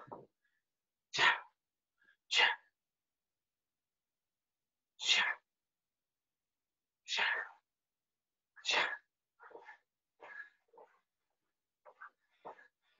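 A man's short, sharp vocal bursts, five loud ones a second or two apart, each under half a second, marking his moves, then a few quieter, shorter sounds near the end.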